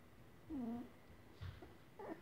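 English Cocker Spaniel puppy whimpering: one short whine about half a second in, then a brief fainter sound about a second later.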